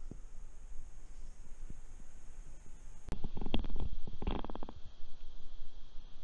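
Spinning reel being cranked: a rapid whirring tick, loudest a little past the middle, over a low steady rumble.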